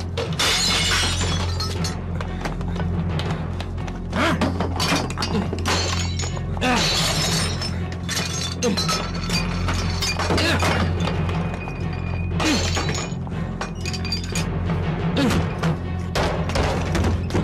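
Tense drama score with a steady low drone, over several loud crashes and shattering glass as furniture and crockery are smashed in a house being ransacked.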